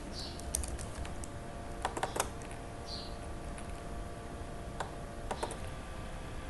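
Scattered clicks of a computer mouse and keyboard in small clusters, from someone working in editing software, over a faint steady hum.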